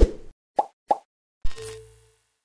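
Electronic logo-sting sound effects: a sharp hit, two quick short blips, then, about a second and a half in, a deep low boom with a steady held tone that fades out.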